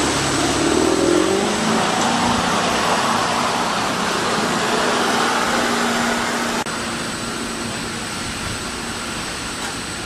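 Rigid-hulled inflatable boat's engine rising in pitch as the boat powers away, then running steadily over a loud rush of water and wind. About two-thirds of the way through the sound cuts suddenly, and a slightly quieter steady rush of sea and wind carries on.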